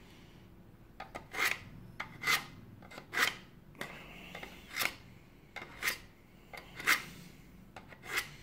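A multitool's steel blade drawn through a handheld knife sharpener's slot: about six short rasping strokes, roughly one a second, starting about a second in.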